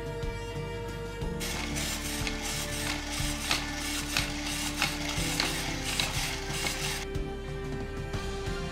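Motor and plastic gear train of a 3D-printed walking monkey toy running as it walks and swings its cymbal arms: a mechanical whirr with sharp clicks about every half second, starting about a second and a half in and stopping near the seventh second.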